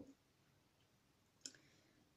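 Near silence: room tone, with one short, sharp click about one and a half seconds in.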